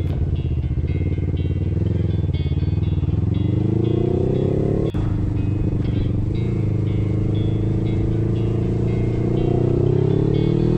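A 250 cc sport motorcycle's engine accelerating, its pitch rising, with a sharp break about five seconds in at a gear change, then rising again near the end.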